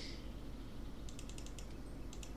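Computer keyboard keys tapped in a quick run of about eight light clicks starting about a second in, with a couple more near the end.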